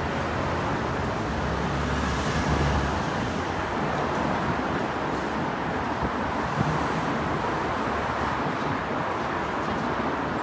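Steady city street traffic noise, with a low rumble swelling briefly about two seconds in, as of a vehicle passing.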